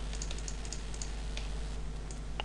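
Light, irregular clicking from the computer used for the sculpting, over a steady low electrical hum.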